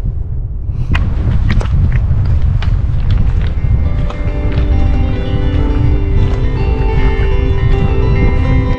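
Wind buffeting the microphone, with background music coming in from about a second in: sharp strummed strokes first, then steady guitar notes from about halfway.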